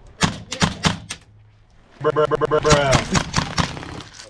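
A quick run of sharp clicks in the first second. Then, about halfway through, a man's voice gives a rapid rolling "brrrah", a mouthed imitation of full-auto gunfire, because the airsoft gun dry-fires and will not shoot.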